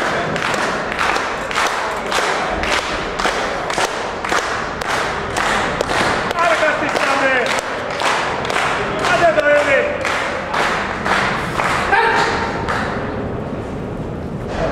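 Steady rhythmic hand-clapping, about two to three claps a second, with men shouting encouragement over it a few times, as spectators urge on a bench presser under the bar.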